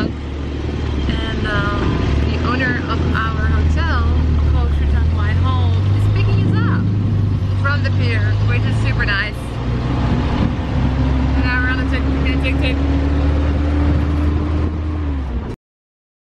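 Motorcycle tuk-tuk engine running under load as the vehicle drives, with voices over it. The engine note steps up about five seconds in and climbs slowly near the end, then the sound cuts off abruptly.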